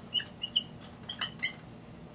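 Dry-erase marker squeaking on a whiteboard while writing, a quick series of short, high squeaks.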